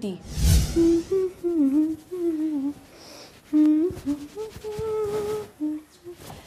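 A short whoosh with a low rumble at the start, then a woman humming a wandering tune in short phrases.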